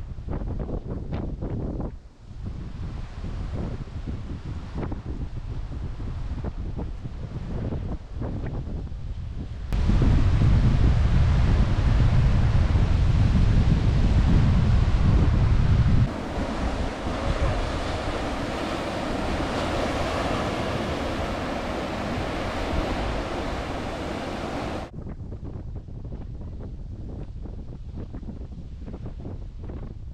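Ocean waves washing on the shore with wind buffeting the microphone. The sound changes abruptly several times, and is loudest and deepest in a rumbling stretch in the middle.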